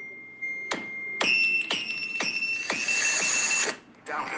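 Electronic keyboard music: a held high tone, then struck notes about every half second that build into a bright shimmer, which cuts off suddenly just before the end.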